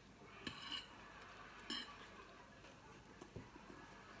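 Faint eating sounds at a table: a metal fork twirling spaghetti and clinking lightly on a plate. There are a few soft clicks, and one brief ringing clink comes a little under two seconds in.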